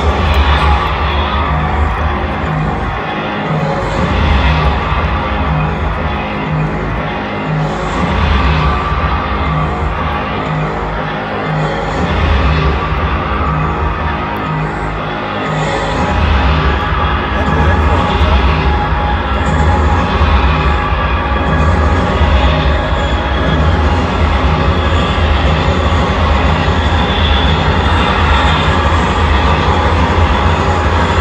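Music with a heavy, steady bass beat and a voice over it, played loud over a stadium sound system.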